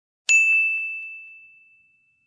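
A single bright bell-like ding about a quarter second in, one clear high tone that rings out and fades away over about a second and a half.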